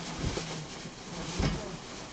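Thin plastic bag rustling and crinkling as items are pulled out of it, with a soft thump about one and a half seconds in.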